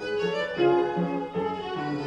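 Viola bowed in a classical performance, a melody of several held notes changing pitch.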